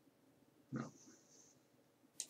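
Near silence, broken about a second in by a single short, low muttered "No" of disappointment.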